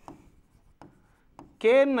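Faint scratching and light ticks of a pen writing on a board, followed near the end by a man beginning to speak.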